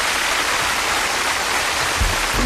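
A steady rushing hiss from a sound effect in the station's produced ID segment, as loud as the speech around it, with no voice or music in it.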